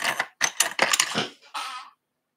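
Wooden coloured pencils clicking and clattering against one another as a hand sorts through them for a colour, a quick run of knocks that stops just before the end.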